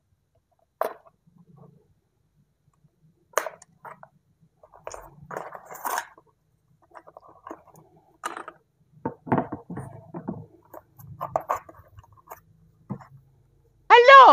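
Plastic-windowed cardboard toy packaging crinkling, clicking and scraping irregularly as a small vinyl doll is worked loose and pulled out of it by hand.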